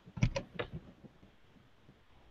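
Three or four short clicks in the first second, then faint room tone over a video-call line.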